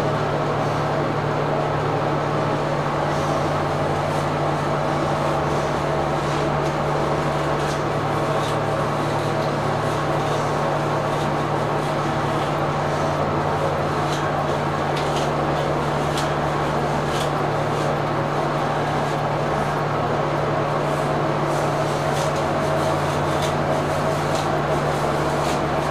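Steady low machine hum, like a running fan or air-conditioning unit, holding one even drone throughout, with a few faint ticks in the middle.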